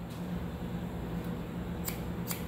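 A single sharp snip of barber's razor-edge scissors near the end, over a steady low hum.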